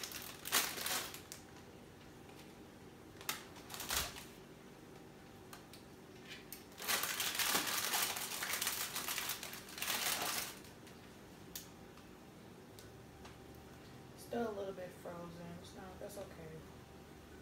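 Plastic bread bag crinkling and rustling as garlic bread pieces are pulled out of it, in several bursts with a long stretch of crinkling in the middle. A few light knocks come between the bursts.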